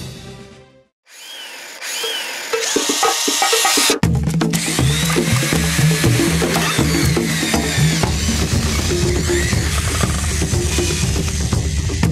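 Background music: one track fades out, and after a brief gap a new electronic track builds up, then a heavy beat with a stepping bass line comes in about four seconds in and carries on.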